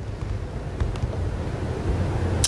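A pause in speech filled by a steady low rumble of room noise through the meeting microphones, with a faint click or two about a second in.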